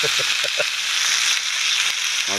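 Bacon rashers sizzling steadily in a frying pan, a constant bright hiss of fat frying.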